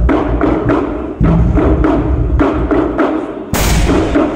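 Pastellessa percussion ensemble of large wooden barrels (botti) and small wooden tubs (tini) beaten with sticks, playing a fast, driving rhythm of deep booming thuds and dry woody knocks. Near the end comes a louder, brighter crash.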